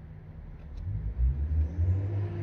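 Low engine rumble of a motor vehicle that swells about half a second in and stays strong.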